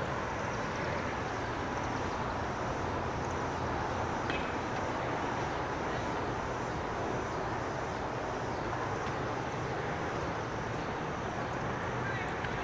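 CSX freight train pulling away in the distance: a steady low rumble of diesel locomotives and rolling cars.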